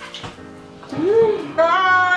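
A woman's sing-song vocalizing: a short hum that rises and falls, then a high, wavering held note near the end.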